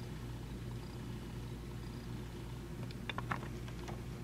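Steady low background hum with a few faint light clicks about three seconds in.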